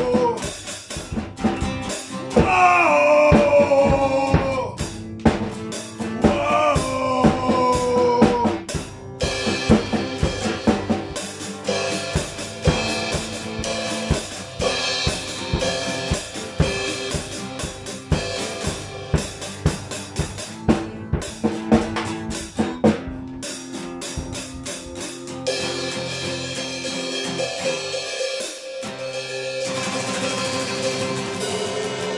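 Live acoustic guitar strumming with a drum kit (kick, snare and cymbals) keeping the beat, and a voice singing lines over the first several seconds. About 25 seconds in, the drum hits thin out, leaving mostly ringing guitar chords as the song closes.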